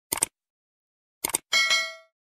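Subscribe-button animation sound effects: two quick double clicks, like a mouse clicking, then a short bell ding about a second and a half in that rings and fades.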